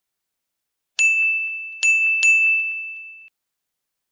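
Three bright ding sound effects about a second in, the second and third close together, ringing into one steady high tone that cuts off suddenly.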